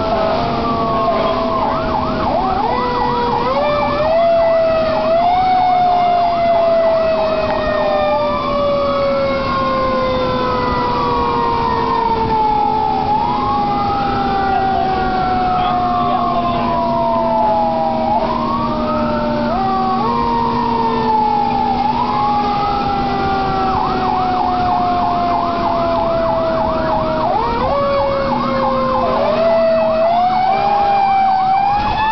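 Fire truck sirens heard from inside the cab of a responding heavy rescue truck. An electronic siren switches between a slow rising-and-falling wail and a fast yelp, over a mechanical siren whose tone falls slowly as it winds down and is spun back up several times. A steady low drone runs underneath.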